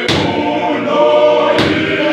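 Men's choir singing a gospel hymn unaccompanied, with a sharp clap near the start and another about a second and a half later.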